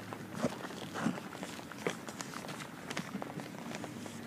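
Footsteps of a person walking slowly, a few soft, irregularly spaced steps.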